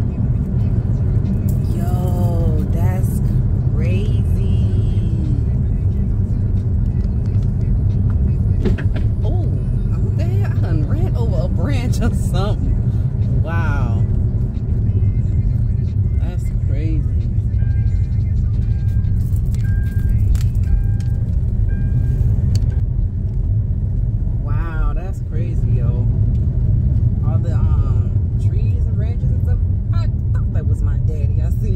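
Steady low road and engine rumble of a car being driven, heard from inside the cabin. Music with a singing voice plays over it in stretches.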